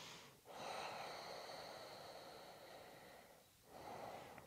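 A woman's long, soft breath out, lasting about three seconds and slowly fading.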